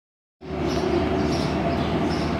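Steady background noise with a faint low hum, starting abruptly about half a second in as the recording begins, with no distinct events.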